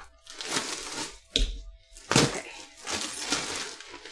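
Thin plastic shopping bags rustling and crinkling in several short bursts as they are handled, with a sharper crackle and a dull thump about two seconds in.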